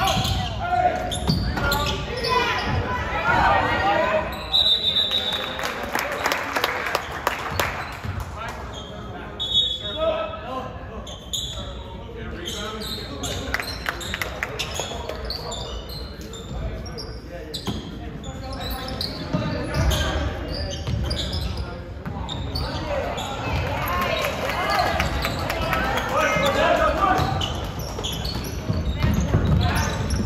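Basketball bouncing on a hardwood gym floor during play, amid shouts and chatter from players and spectators, all echoing in a large gymnasium.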